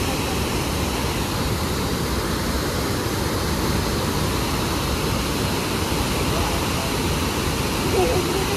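River floodwater pouring through the openings of a weir-cum-causeway and churning in the white water below: a steady, loud rush of water.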